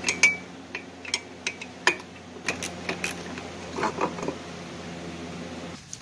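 A hand wrench on the brake master cylinder's mounting nuts, giving irregular metal clicks and clinks over a steady low hum.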